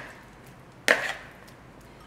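A single sharp clack of metal kitchen tongs about a second in, as they toss blanched broccolini in a bowl.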